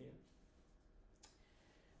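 Near silence: room tone in a pause between sentences, with one faint short click a little past halfway through.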